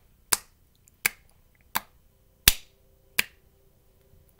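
Five sharp finger snaps in a steady rhythm, a little under one and a half a second.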